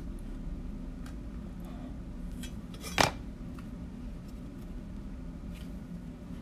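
Small metal card tin being handled and opened: faint taps and scrapes, then one sharp metallic click about halfway through as the lid comes open.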